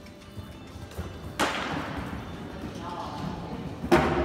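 Two sharp knocks about two and a half seconds apart, each ringing on with a long echo, over faint background music and voices.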